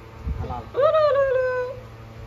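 A toddler's single drawn-out whining cry, about a second long, jumping up in pitch and then slowly falling away as he is lifted.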